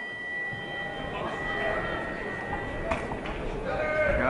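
Boxing ring bell ringing out to start the bout: a single struck tone that hangs on and fades away over about three seconds, over the murmur of the hall crowd, with one sharp knock about three seconds in.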